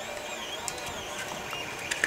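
Quiet handling of a 3D-printed plastic filament spool being fitted onto a filament refill: a couple of light plastic clicks, over a faint wavering high tone.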